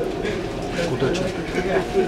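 A man's voice talking inside a commuter-train carriage, over the carriage's low steady rumble.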